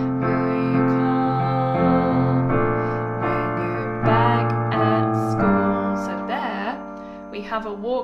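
Piano playing a chord accompaniment, the chords changing every second or two, then thinning out and fading in the last couple of seconds.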